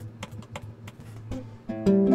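A 1967 Gibson ES-125C electric archtop guitar played through its amp: a low note rings faintly under a few soft string clicks, then a chord is struck near the end and rings on. Its tone is dull and subdued, which the player puts down to the original bridge.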